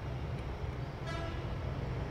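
Steady low rumble of background road traffic, with a faint brief horn-like tone about a second in.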